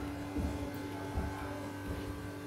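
A steady electrical buzz in a small room, with irregular soft low knocks as casting plaster is poured from a plastic tub into a silicone mould.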